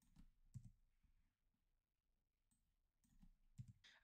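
Near silence with a few faint computer key clicks, a couple about half a second in and a short cluster near the end.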